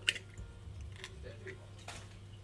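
An egg being cracked and emptied into a bowl: a sharp tap on the shell just after the start, light handling ticks, and another click near the end.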